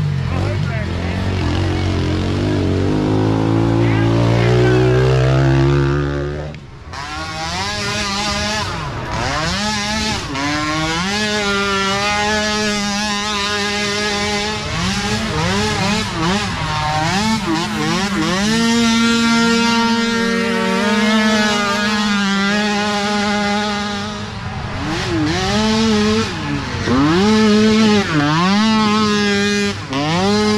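Small micro-ATV engines racing on a dirt trail. For the first six seconds the engine note climbs steadily as a quad accelerates. After a brief break the note is held high, dipping and rising again and again as the throttle is let off and reapplied.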